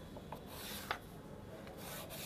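Tailor's chalk drawn along the edge of a wooden L-square on shirt cloth: faint rubbing strokes, one about half a second in and another near the end, with a small tap about a second in.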